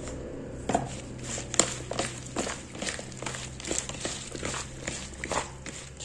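Hands tossing wet sliced wild mushrooms in a plastic bowl to mix in the seasoning: soft, irregular squishes and light clicks of the pieces against each other and the plastic.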